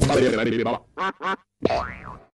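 Cartoonish logo sound effects, edited: a dense jumble of sound for nearly a second, then two short chirps that slide up and down in pitch about a third of a second apart, and a sliding tone near the end.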